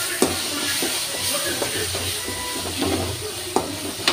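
Onion-tomato masala with chilli powder sizzling in an aluminium kadai while a cooking spoon stirs and scrapes through it. The spoon knocks sharply against the pan just after the start and again near the end.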